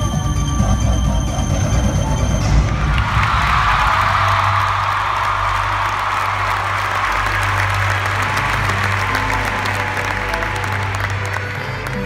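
Recorded show music playing over the arena speakers, then from about three seconds in the crowd breaks into applause and cheering that swells and slowly dies down while the music carries on underneath.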